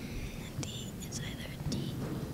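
Faint whispering: a few short hissed sounds over a steady low room hum.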